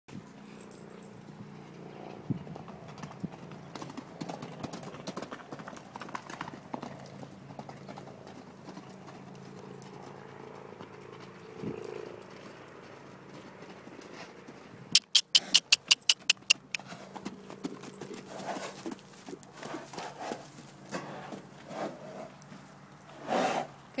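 Horses galloping loose on a dirt arena: a scatter of hoofbeats, with a quick run of about nine sharp, loud clacks a little past the middle.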